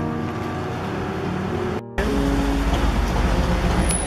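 Street traffic noise, with a car going by, and a brief gap about halfway through.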